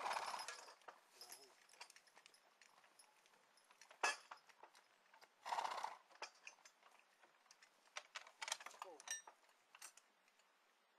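Percheron draft horses standing in harness: scattered clinks and knocks from the harness and trace chains, with a sharp knock about four seconds in and a flurry of clinks near the end, one of them ringing briefly. Two short breathy bursts come from the horses, one at the start and one about halfway through.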